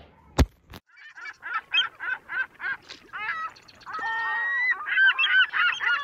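A sharp click, then repeated honking bird calls, several a second, with one longer held call about four seconds in and denser overlapping calls near the end.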